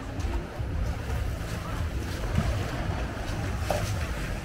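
Sea waves washing and splashing against a stone waterfront wall, mixed with wind rumbling on the microphone.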